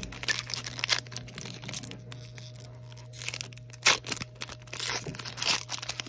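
Foil wrapper of a Mosaic Soccer trading-card pack being torn open and crinkled, a run of sharp crackles, loudest a little before four seconds in and again around five and a half seconds.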